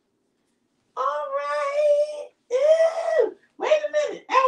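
A woman's voice in long, drawn-out wordless sung notes, three of them, starting about a second in, with the middle one arching up and down in pitch.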